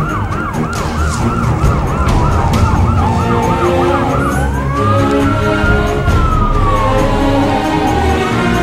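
Police car siren sounding a rapid yelp, about four sweeps a second, for roughly four seconds, then switching to a slow rising and falling wail. A low vehicle rumble runs beneath it.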